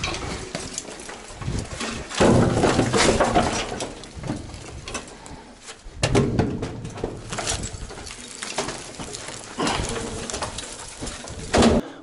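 Rotten wooden planks and mine debris being shoved by hand, scraping and clattering down the shaft in two loud spells, about two seconds in and again about six seconds in, with quieter shuffling between.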